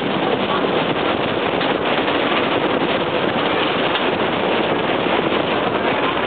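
New Orleans St. Charles streetcar running along its rails: a steady, loud noise of the moving car, with wind rushing past.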